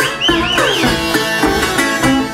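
Solo acoustic blues on a resonator guitar, played live, with several notes gliding and wavering in pitch in a quick phrase about half a second in.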